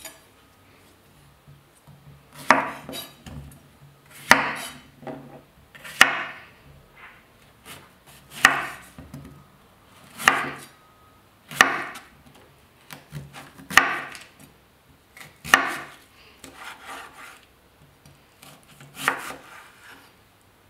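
A knife slicing lengthwise through a cucumber on a wooden cutting board: about nine crisp cuts, one every second or two, with smaller knife sounds between them.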